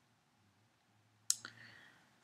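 Near silence, then a single sharp click a little over a second in, followed by a short faint tail.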